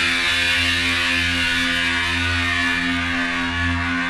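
A distorted electric guitar chord from a hardcore punk band, struck once and held so it rings on steadily with no drums.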